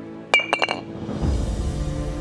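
A glass liquor bottle clinking about five times in quick succession, as if it is being put down hard, over steady background music. About a second in, a low rumble swells up under the music.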